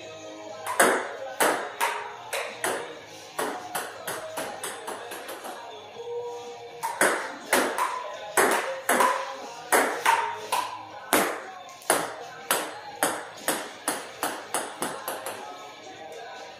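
Table tennis rally: a plastic ball clicking off paddles and the table, about two to three hits a second, pausing for about a second and a half midway and stopping near the end. Music plays underneath.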